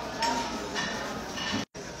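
Faint background chatter of a restaurant dining room, with a moment of dead silence just before the end.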